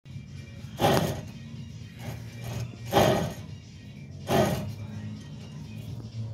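A wheel hub's new wheel bearing grinding roughly in three short bursts as the hub is turned by hand, a noise the owner takes as the sign of a worthless bearing. A steady low hum runs underneath.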